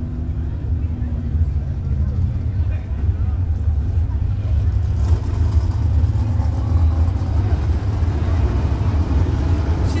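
Low, steady rumble of hobby stock race car engines, with faint voices mixed in.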